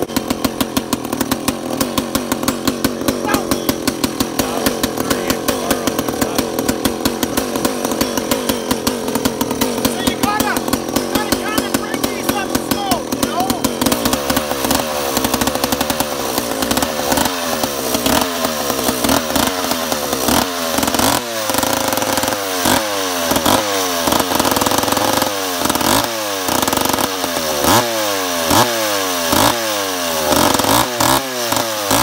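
Large vintage two-stroke felling chainsaw running: a steady, fast idle for about the first half, then revved and let fall back again and again, roughly once a second, for the rest.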